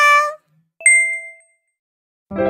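Edited-in title-card sound effects: a brief warbling tone, then a single bright bell ding just under a second in that rings out and fades.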